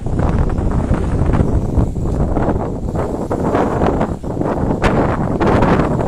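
Wind buffeting the microphone outdoors: a loud, gusty rumble that rises and falls, with a few brief knocks.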